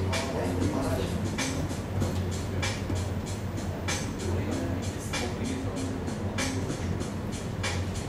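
A steady low hum with faint voices and music over it, and a soft hissing beat about every second and a quarter.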